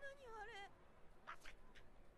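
Near silence with a faint, muffled voice from the anime playing at low volume: a character's short startled exclamation with wavering pitch in the first half-second, then a couple of faint clicks.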